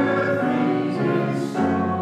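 Voices singing a hymn in held chords with instrumental accompaniment, the notes moving on every half second or so.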